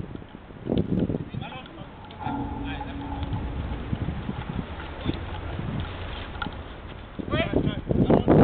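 Footballers' shouts and calls during a five-a-side match, too indistinct to make out as words. A drawn-out call is held for about a second starting just after two seconds in, and a burst of shouting comes near the end.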